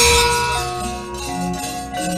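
Javanese gamelan playing: bronze metallophones ring out a melody of sustained notes, one new note about every half second or less, opening on the decaying ring of a loud strike just before.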